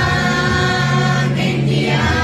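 A group of school boys and girls singing a patriotic song together, holding long steady notes.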